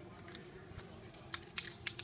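Footsteps on dry leaf litter: a few short crackles and crunches in the last half-second or so, over a faint background.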